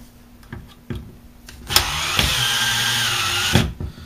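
A cordless power screwdriver runs for about two seconds with a slightly wavering whine, working at the tight screw that holds the ignition coil. A few light clicks come before it.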